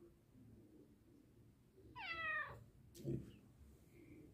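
A domestic cat meows once, a single call of about half a second that falls in pitch. About a second later there is a short click and a low thump.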